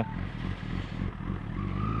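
Honda CBR sport bike's inline-four engine running steadily at low speed, a low even hum under wind and road noise.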